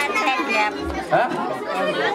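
Overlapping chatter of a small crowd, several women's voices talking at once.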